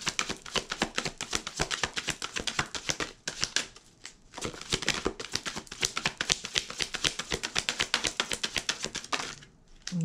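A deck of tarot cards being shuffled by hand: quick, rapid clicking of cards riffling and slapping against each other, in two runs broken by a short pause about three seconds in, stopping about a second before the end.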